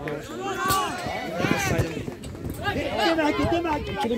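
Several people shouting and calling out over one another around a small-sided football match, with a couple of sharp knocks in the first half.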